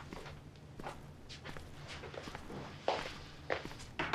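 Footsteps on a wooden floor, a series of soft steps with a louder knock about three seconds in.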